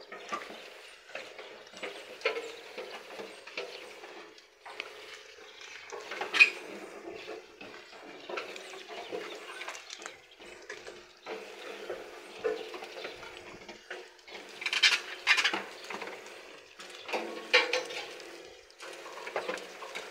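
Sheep eating from a black rubber feed tub: irregular crunching and rustling of feed, with scattered knocks and scrapes against the tub. There is a sharp louder knock about six seconds in and louder bursts near the end.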